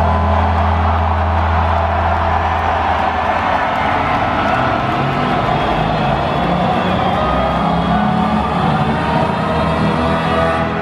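Concert crowd cheering and screaming over a recorded intro track. The track's low drone fades out about three seconds in while the cheering carries on.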